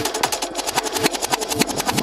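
Electronic dance music in a DJ mix with the bass line and sub-bass pulled out, leaving the kick drum and hi-hats running on a steady beat.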